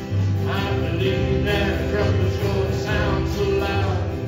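Live gospel song from a small worship band: male voices singing over acoustic and electric guitars, with steady low bass notes underneath.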